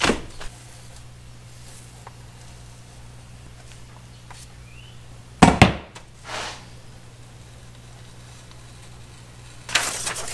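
Quiet workshop room tone with a low steady hum, broken by one sharp knock on the workbench about halfway through and a softer sound a second later. Paper rustles as the template sheet is lifted near the end.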